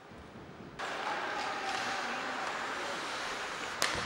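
Ice hockey arena sound: a steady hiss of rink and crowd noise that starts abruptly about a second in, with a single sharp knock near the end.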